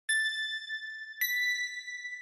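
Two bright bell-like notes, the second a little higher and about a second after the first, each ringing on and fading: the sparse opening of a hip-hop instrumental beat.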